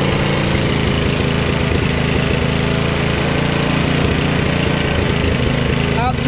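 Hyundai petrol tiller engine running steadily and evenly after being started, its revs held down by the refitted governor spring instead of racing.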